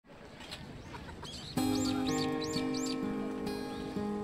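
Steel-string acoustic guitar: a chord struck suddenly about a second and a half in and left ringing, with new notes added twice after that. A bird chirps repeatedly over it in short, high, rising-and-falling calls.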